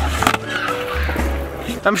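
Skateboard flip trick on concrete: a couple of sharp clacks of the board in the first half second, over background music with a steady bass line.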